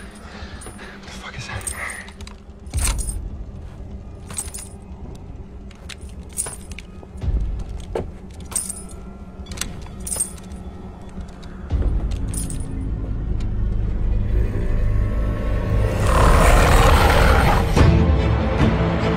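Film soundtrack: slow boot footsteps with a metallic jingle, about one every one and a half to two seconds, over a low, tense music score. The score builds about two-thirds of the way through and swells loudly near the end.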